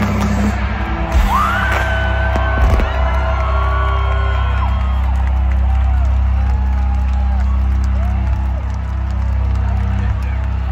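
Live rock band through a stadium PA letting a chord ring out, a steady low sustained sound after the drums stop early on, with a loud hit about three seconds in. Fans in the crowd whoop and yell over it.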